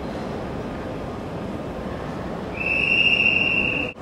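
Railway station hall ambience: a steady low rumble and hiss. About two and a half seconds in, a loud, high, steady squeal joins it for just over a second, then everything cuts off suddenly.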